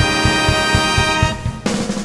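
Big-band jazz orchestra playing: a held brass chord over a steady beat in the drums, about four strokes a second. The chord and beat cut off about one and a half seconds in, leaving a lower, quieter sustained note.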